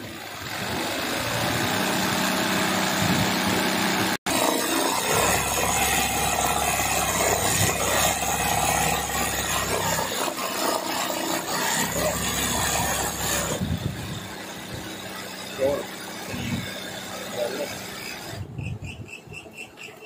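Sewing machine running fast while stitching machine embroidery, a rapid needle clatter over a steady hum. It is briefly cut off about four seconds in, runs softer after about thirteen seconds and dies away near the end.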